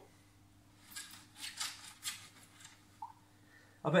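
Aquarium gravel scraping and crunching as a fish net is dragged through the substrate to scoop it up. There are a handful of short rasping strokes between about one and three seconds in, against a quiet background.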